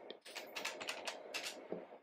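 Keys of an electronic calculator being pressed in a quick run of clicks, as figures are punched in to check a calculation.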